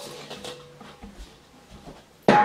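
Quiet room tone with a few faint, soft knocks of handling, dying away over the first second and a half.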